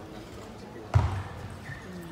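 A single sharp knock about a second in, from play at a table tennis table as a point gets under way, over the steady murmur of an arena crowd.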